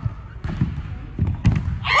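Several dull thumps of a person tumbling and landing on a wooden gym floor, over a low rumbling handling noise, in a large echoing hall. A high voice cries out near the end.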